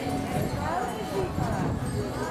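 Several people talking at once in the background, their words not made out.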